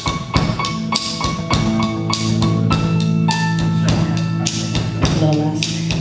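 Live band playing an instrumental passage: a drum kit beating a steady rhythm over sustained bass and keyboard notes and electric guitar.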